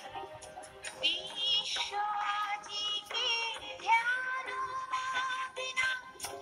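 A recorded song with a woman singing a wavering melody over light percussion, holding one long note about four seconds in.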